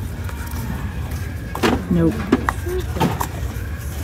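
Light knocks of items being handled on a store shelf, a couple of short clicks about a second and a half in and again near three seconds, over a steady low background hum.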